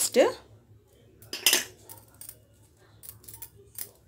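Stainless steel kitchenware clanking once, sharply, about a second and a half in. Near the end come light, rapid clicks and rustling as a hand mixes corn kernels and flour in a stainless steel bowl.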